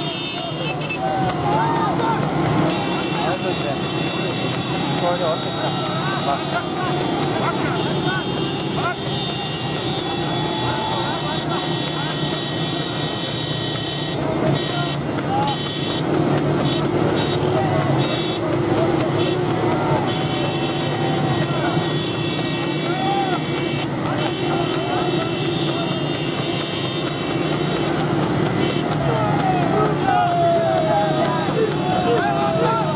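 Motorcycle and car engines running in a close convoy, with men shouting over them. A steady high-pitched horn sounds through long stretches.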